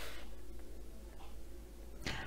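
Quiet room tone with a steady low hum, and a faint brushing of a hand against a coloring book's paper page that fades out just after the start.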